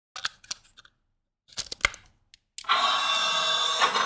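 Light clicks as a battery is seated in a lightsaber chassis, then about two and a half seconds in the Crystal Focus 10 (CFX) soundboard powers up and plays its boot sound through the 28 mm speaker for about a second, stopping abruptly.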